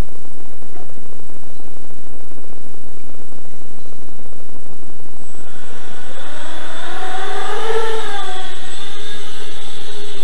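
Small carbon-fibre quadcopter's four 2840kv brushless motors and three-blade 6x3 props running as it hovers: a loud, steady whirring rush. About halfway through, a motor whine comes in and rises and falls in pitch as the throttle changes.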